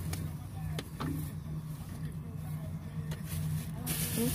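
A steady low engine hum, like a vehicle idling, with a few light clicks over it.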